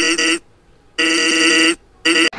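A tiny snippet of voice looped into a steady, unchanging pitched buzz. It is cut on and off abruptly, with short silences between the stretches: a stuttered remix edit.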